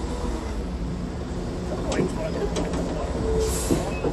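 Diesel engine of a ready-mix concrete truck running with a steady low rumble as the truck moves into position. Faint voices and a brief hiss are heard about three and a half seconds in.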